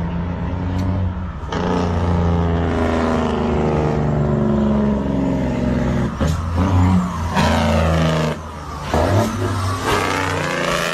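Truck engine running steadily as the truck, its brakes failed, leaves the highway and runs up a gravel runaway-truck escape ramp. From about a second and a half in, the tyres grind loudly through the gravel, with several jolts in the second half.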